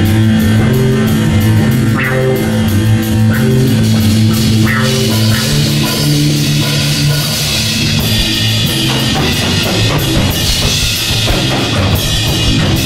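Rock band playing live without vocals: two electric guitars and a drum kit, loud and steady, with one note held for about the first nine seconds over the drums and cymbals.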